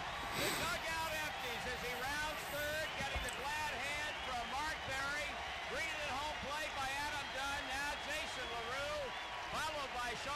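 Faint voices from baseball highlight footage playing in the background, over a steady low wash of noise.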